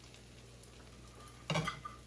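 Faint sizzle from a skillet of ground beef, sausage and rice filling cooking on the stove, with a short scrape of a metal ladle scooping in the pan about one and a half seconds in.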